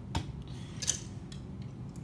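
Plastic action figures being handled off-camera: two light plastic clicks about a second apart, over a low steady hum.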